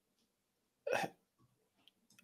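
One short, sharp breath sound from a person about a second in, with near silence around it.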